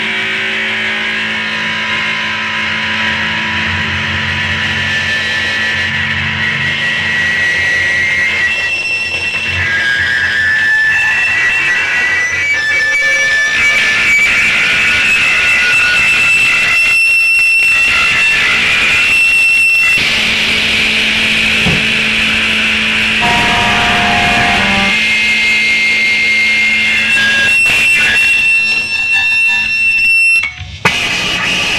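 Electric bass and guitar held in a loud, sustained wall of distorted noise with no drums: high whistling feedback tones that step and shift in pitch over a steady low drone. The noise thins briefly twice a little past halfway.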